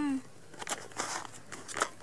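Skis and ski boots crunching on packed snow: a few short, scattered crunches as the skis shift underfoot.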